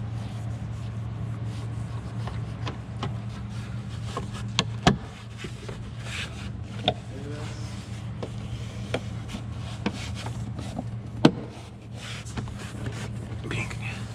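Plastic A-pillar trim on a BMW X3 being pressed onto the pillar by hand, its clips snapping in with a few sharp clicks, the loudest about five and eleven seconds in. A steady low hum runs underneath.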